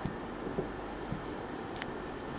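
Marker pen writing on a whiteboard: faint scratching strokes with a few light ticks.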